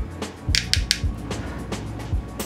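Background music with a steady beat and a sustained bass line, with a few short crisp percussion hits about half a second in.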